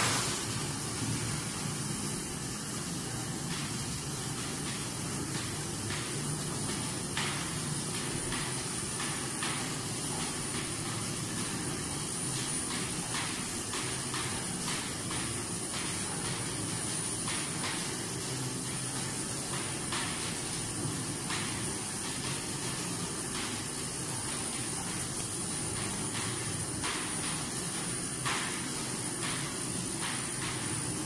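Automatic turntable pallet stretch wrapper (Yupack T1650F) running a wrapping cycle: a steady mechanical running noise with a thin high whine on top and occasional faint light clicks.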